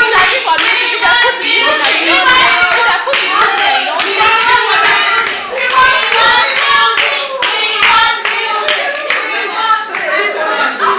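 A group of women clapping and singing together, with sharp hand claps coming about once or twice a second over the voices.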